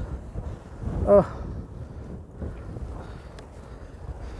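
Wind buffeting the microphone, a steady low rumble, with a short 'uh' from a man about a second in.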